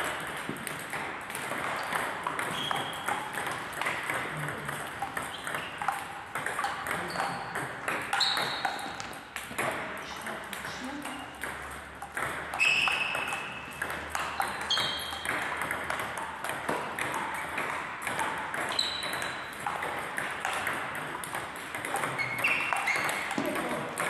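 Table tennis balls clicking off paddles and tables in rallies on two tables, a quick run of sharp ticks. Some hits ring briefly with a short, high ping.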